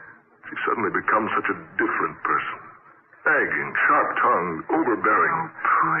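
Speech only: spoken dialogue from an old radio drama recording, sounding thin with its upper range cut off.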